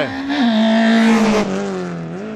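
Peugeot 1.6-litre racing car driven flat out past close by. The engine note steps down about half a second in and falls again near the end as the car goes by, and the noise is loudest about a second in.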